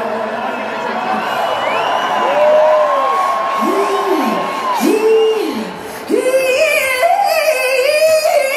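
A singer's wordless notes over crowd noise: each note slides up, is held, then falls away. About six seconds in, a louder note comes in and is held with vibrato.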